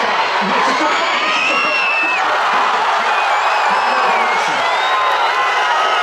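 A large crowd of football supporters: a steady din of many voices, with scattered shouts and whoops and children's high voices among them.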